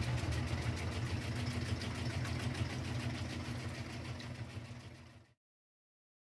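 Steady low mechanical hum of a claw-game motor with a fast, fine rattle. It slowly fades and stops about five seconds in.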